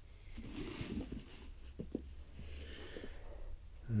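Soft rustling as a toy's cardboard-backed plastic blister pack and its packing are handled, in two quiet spells with a few light taps.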